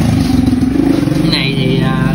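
An engine running steadily in the background, with a voice coming in near the end.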